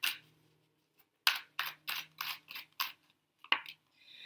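A deck of tarot cards being shuffled by hand: a run of about six quick strokes of the cards, roughly three a second, with one more stroke shortly after.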